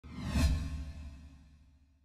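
Intro sound effect: a whoosh over a deep boom, swelling for about half a second and then fading away over the next second.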